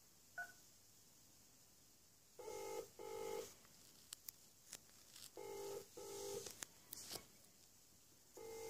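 A single touch-tone keypress beep just after the start, then a faint British telephone ringback tone, the double ring sounding twice about three seconds apart, heard over the phone line as the call rings through after a menu option is chosen.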